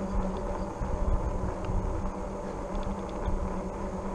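Rad Power Bikes RadRover fat-tyre e-bike riding over asphalt: wind buffeting the microphone and tyre rumble, with a steady low hum from the rear hub motor.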